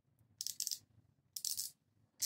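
Two short bursts of metallic clicking, about a second apart, from a small hand driver turning M6 threaded hardware into the end of a wooden dowel.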